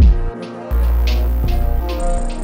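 Trap beat playing back from FL Studio: a heavy 808 bass hit that slides down in pitch, a brief gap in the low end, then a long held 808 note under a sustained melody and evenly spaced hi-hats.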